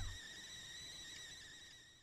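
Faint, thin high-pitched whistle-like tone, a cartoon sound effect, slowly fading away after the box character is tossed off.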